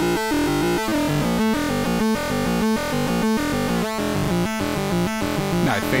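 Synthrotek Atari Punk Console Eurorack module playing square-wave tones that track a Novation Bass Station II arpeggio, heard together with the Bass Station II itself: a repeating pattern of stepped notes with a short gap about every 0.6 seconds. Near the end the pattern gives way to wavering, gliding tones.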